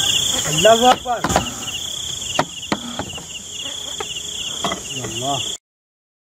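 Crickets chirping in steady, even pulses, with a few sharp clicks; the sound cuts off suddenly near the end.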